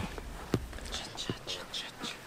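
Faint voices of people talking, with two short clipped vocal sounds and a few brief hissy, whisper-like bursts.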